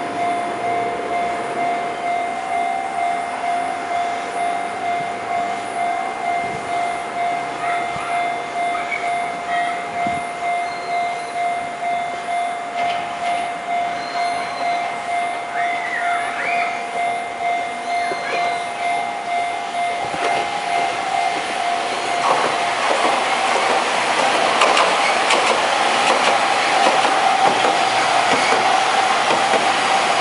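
Level-crossing warning bell ringing in a steady pulse, about one and a half strokes a second. From about two-thirds of the way in, the noise of an articulated electric tram running over the rails grows loud over the bell as the tram comes by close.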